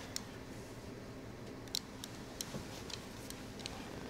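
Quiet room tone with a faint steady hum and about half a dozen soft, scattered clicks.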